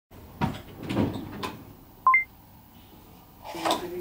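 Three dull knocks about half a second apart, then a short two-note electronic beep stepping up in pitch.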